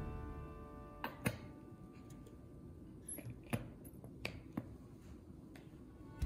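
Background music fading out, then a handful of soft, irregular clicks and taps from a plastic glitter glue bottle being squeezed and dabbed onto card paper.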